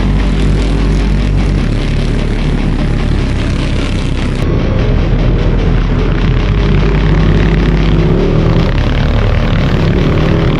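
Hard rock music mixed with the engines of several off-road trophy karts racing at speed on a dirt track.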